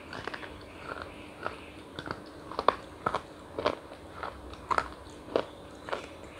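Crunchy chocolate being bitten and chewed close to the microphone: a string of sharp crunches, about two a second.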